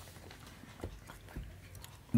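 Faint handling noise from a hand and pen moving over a book's paper page, with two soft knocks about a second apart.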